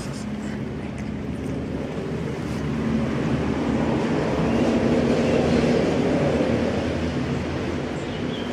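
Kitten purring steadily while being stroked, close to the microphone; the purr swells to its loudest about halfway through and eases off near the end.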